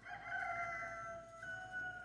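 A rooster crowing: one long crow that fills most of the two seconds.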